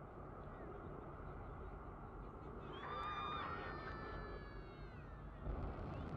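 Low, steady rumble of the Soyuz-2.1a rocket's engines running up to full thrust on the pad just before liftoff. About halfway through, a high-pitched call of about two seconds, falling slightly in pitch, sounds over the rumble.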